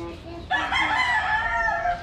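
Rooster crowing: one long call starting about half a second in.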